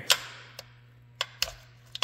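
Sharp metallic click from the gear selector of a Kubota RTV X1100C transmission being worked by hand, followed by a few fainter clicks about a second later. The selector's detent pin pops in and out, and the shift is stiff. A faint steady hum runs underneath.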